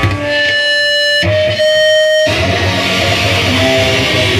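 Live hardcore punk band: an electric guitar holds two sustained notes, then the full band crashes in about two seconds in with drums and distorted guitar.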